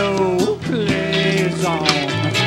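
A live band playing a song on guitars, with sustained bass notes under a wavering lead melody line.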